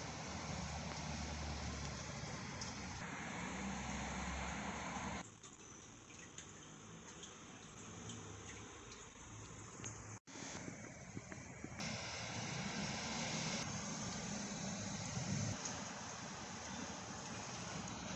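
Steady background hiss with no distinct event. It changes in level and tone abruptly at several points and drops out completely for an instant about ten seconds in.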